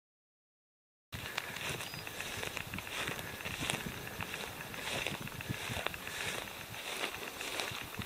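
Silence for about the first second, then repeated rustling and soft footfalls as someone walks through dry tussock grass carrying the camera.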